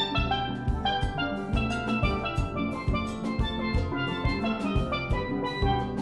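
Steel band playing: many steelpans ringing out a quick, busy melody and chords over a steady, regular drum beat.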